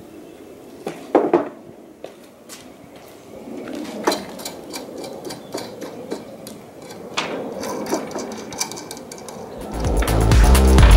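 Turned wooden table legs being handled and taken off an upturned table frame: scattered knocks and clunks of wood on wood, with handling and rubbing noise between them. Electronic music starts just before the end.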